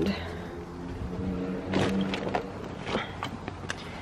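A fabric tote bag being picked up and pushed into a small car trunk: a few short knocks and rustles, over a steady low hum.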